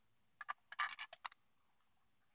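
Faint plastic clicks and a short scrape from a handheld walkie-talkie's battery cover being worked over its battery compartment, a quick run of about half a dozen that starts about half a second in and is over by about a second and a half in.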